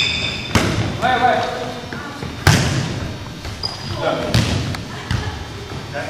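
A volleyball bouncing and being struck on a wooden gym floor: several sharp thuds, the loudest about two and a half seconds in, each trailing off in the hall's echo.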